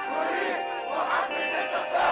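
A large protest crowd chanting in rhythm, a shout about every second, over a steady held musical tone.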